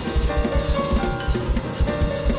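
Live band of drum kit, hand drums and piano playing: a busy run of bass drum thumps under hand-drum strokes, with held piano notes ringing above.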